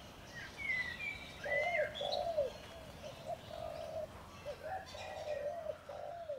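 Birds calling: a long run of short, low, falling calls repeated again and again, with a few higher chirps and whistles over them in the first couple of seconds.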